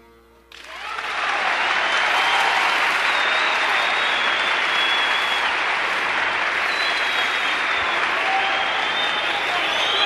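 Concert audience applauding, starting about half a second in as the final note of the song dies away and holding steady, with whistles and shouts through it.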